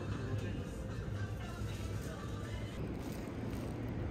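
Background music with indistinct voices over it.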